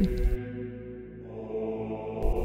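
Soft background music of long held, steady tones, heard alone in a pause of the narration.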